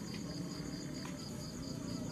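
Crickets chirping in a steady, rapidly pulsing high trill.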